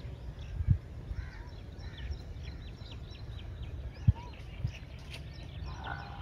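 Quiet rural background: faint bird calls, including a quick run of high ticks at about five a second, over a low rumble with a few soft thumps.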